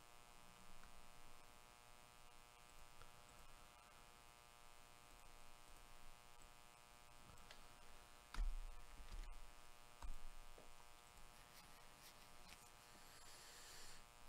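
Near silence: a faint steady electrical hum, with a few soft clicks and two low thumps, the first about eight seconds in and the second about two seconds later.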